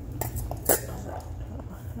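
Two short clinks from a metal dog bowl of kibble: a light one, then a much louder one a little under a second in.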